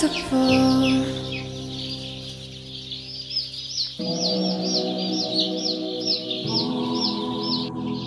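A brood of young chicks peeping over a soft sustained music bed. The peeps are short, high and falling, about two or three a second, and cut off abruptly just before the end.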